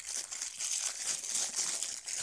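Clear plastic wrap crinkling and crackling without a break as hands turn over and unwrap a small tool sealed inside it.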